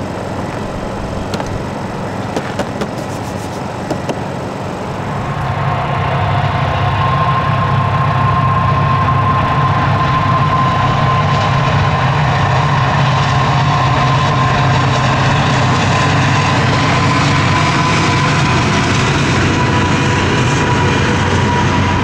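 A portable Honda generator running steadily for the first few seconds, then, from about five seconds in, a double-stack container freight train passing: a louder steady rumble with a thin high whine over it.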